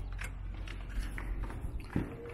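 Footsteps and handheld-camera handling noise at a doorway: a few light knocks and clicks over a low rumble, with one sharper knock at the start and another near the end.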